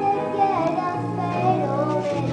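A young girl singing a sustained, gliding melodic line over a steady musical accompaniment.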